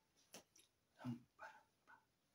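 A man's voice faintly singing the words "not alone" in a few short, soft phrases with no accompaniment. A single faint click comes shortly before.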